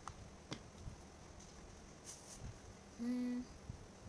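Quiet handling sounds with a few faint clicks, then, about three seconds in, a woman's short closed-mouth hum on one steady note lasting about half a second.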